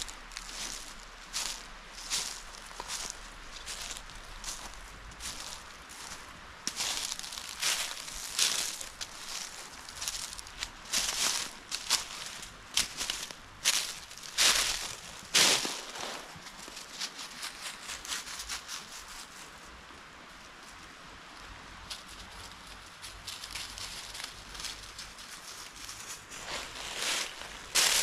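Dry leaves and winter grass crunching and rustling underfoot in irregular steps, with a quieter lull about two-thirds of the way through.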